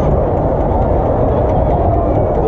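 Steady crowd murmur and building hum in an ice hockey arena, with faint light clicks over it.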